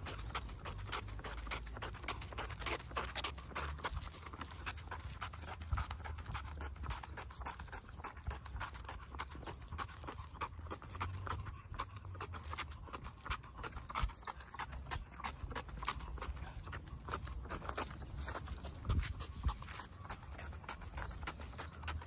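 Footsteps on asphalt: a Cavalier King Charles Spaniel's booted paws pattering along with a walker's steps, making many small irregular clicks and scuffs. A steady low rumble lies underneath.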